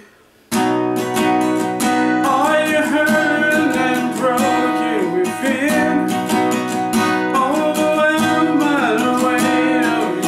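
Steel-string acoustic guitar strumming chords in B major, starting about half a second in and running on steadily, with a man's voice singing along from about two seconds in.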